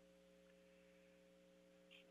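Near silence, with only a faint, steady electrical hum.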